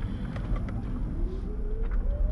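Inside the cabin of a BMW 5 Series GT Power eDrive hybrid prototype under hard acceleration: a steady low rumble, and from about a second in an electric-motor whine that rises steadily in pitch as the car gathers speed.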